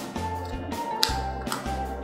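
Background music with a steady, repeating bass beat. A single light tap about a second in, as a cardboard game tile is set down on the table.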